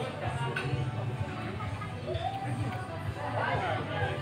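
Restaurant dining-room ambience: background music playing under indistinct voices, over a steady low hum.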